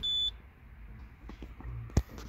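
Citroën C4 Picasso dashboard warning beep: one short, high beep that goes with the 'gearbox faulty' warning. A sharp click follows near the end.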